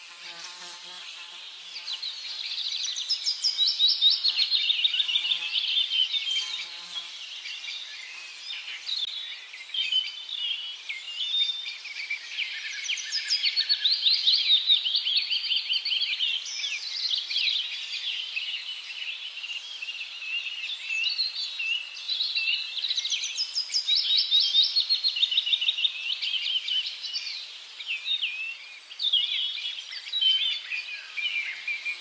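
Woodland ambience: many birds chirping and trilling at once, a dense continuous chorus of short high calls and rapid trills.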